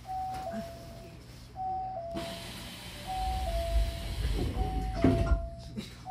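Train door-closing chime, a two-note falling chime repeated about every second and a half, while the car's doors slide shut. A rushing noise rises as the doors move, and there is a knock as they meet about five seconds in.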